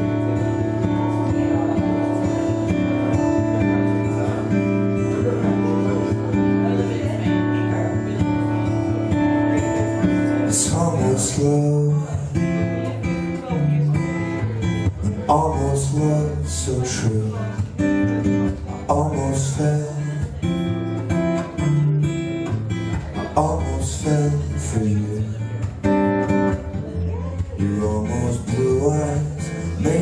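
Acoustic guitar played solo as a song's instrumental introduction. Held, ringing chords for about the first ten seconds, then a busier picked and strummed pattern with moving bass notes.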